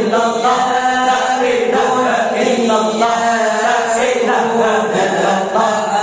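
A group of men chanting an Islamic devotional dhikr together in unison, unaccompanied, through handheld microphones, with long held and gliding notes.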